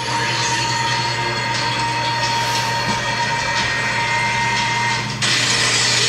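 Anime battle sound effects: a steady noisy rumble under a held high whine. About five seconds in the whine cuts off and the noise turns louder and brighter.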